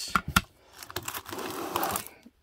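Hard plastic graded-card slabs clicking against one another as they are set down and picked up, a few sharp clacks at the start, then a rustling scrape of the slabs sliding over each other.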